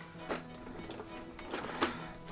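Soft background music with held notes, over a few short plastic clicks and taps as a toy tank's plastic canopy is pressed onto its hinge tabs, the sharpest click near the end.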